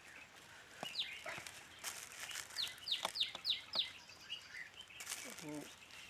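A bird calling: one high, downward-sliding chirp about a second in, then a quick run of five such chirps, about three a second, past the middle.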